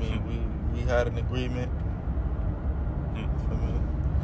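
Steady low rumble of a car's interior, the sound of a car seen from inside its cabin, with a man talking faintly over it in a phone recording.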